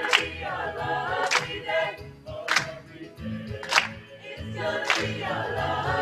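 A mixed student choir singing a cappella, the whole group clapping in unison on a slow beat, one sharp clap a little more than once a second.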